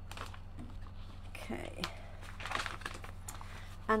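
Paper catalogue pages being turned and flicked by hand: irregular light rustles and clicks of paper, over a steady low electrical hum.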